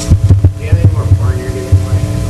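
Irregular low thumps over a steady electrical hum, with faint voices underneath.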